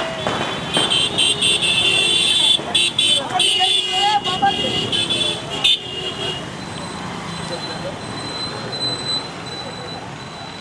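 A procession of motorcycles riding past, their horns honking in rapid repeated toots for the first six seconds or so over the engines and road noise, which then carry on steadily.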